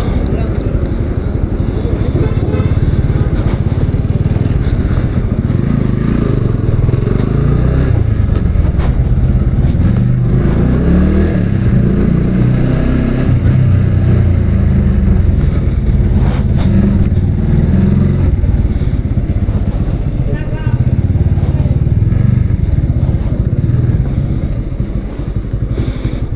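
Motorcycle engine running as the bike is ridden slowly, the sound holding steady; it eases off near the end as the bike slows to a stop.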